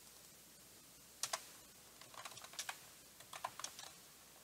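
Faint typing on a computer keyboard: a loose run of keystrokes starting about a second in.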